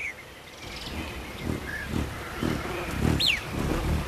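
Bird calls in forest ambience: a short faint chirp a little before halfway, then a clear chirp sliding downward about three seconds in, over uneven low background sound.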